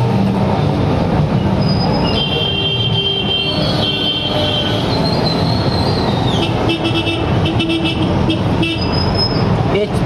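Three-piston HTP power-sprayer pump, belt-driven by a single-phase electric motor, running steadily under test. Vehicle horns toot over it a few times.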